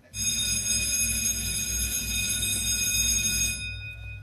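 A musical sound-effect cue: a sustained bell-like chord of steady high tones over a low rumble, starting suddenly and fading out near the end.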